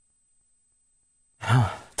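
Near silence for about a second and a half, then a man's brief sigh near the end.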